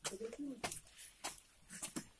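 Low, indistinct murmuring voices with several sharp clicks in between.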